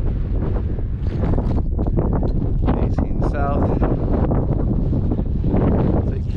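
Wind on the camera microphone: a constant low rumble and buffeting, with a brief voice about halfway through.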